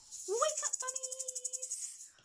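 Jingling hand percussion shaken rapidly and evenly, under a woman singing a short phrase that ends on a held note of about a second.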